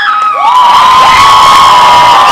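Audience cheering loudly, with many high-pitched screams and shouts held over a roar of voices.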